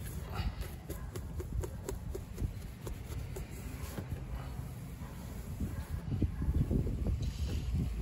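A cloth towel being wiped and rubbed over a car's rear window glass and painted hatch, with scattered light clicks and knocks from the hand and cloth moving over the surface.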